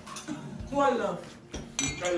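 A voice rising and falling about a second in, with a short sharp clink near the end, like dishes or cutlery knocking together.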